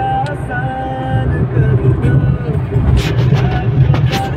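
Car driving at highway speed heard from inside the cabin: a steady low rumble of engine and tyres on the road.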